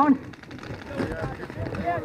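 Only quiet speech: a man's voice talking softly, fainter than the talk just before and after.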